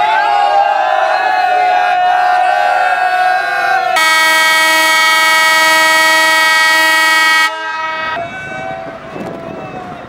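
A diesel locomotive's air horn sounds one long, steady, loud blast starting about four seconds in and cutting off abruptly about three and a half seconds later. Before it, a crowd's voices are heard.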